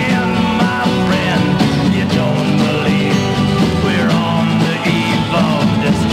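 Mono 1965 folk-rock recording playing from a 45 RPM vinyl single on a turntable: full band with a steady beat, with no lyrics sung in this stretch.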